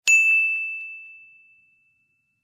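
A single bright, high ding laid in as an edit sound effect at the cut: one sharp strike that rings on one clear tone and fades away over about a second and a half.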